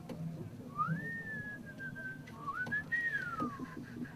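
A person whistling a short, simple melody: a note that slides up and is held while drifting down, then a second phrase that rises and slides down again.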